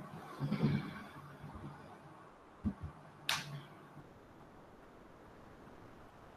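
Faint background room sound with a dull knock about two and a half seconds in and a sharp click just after it.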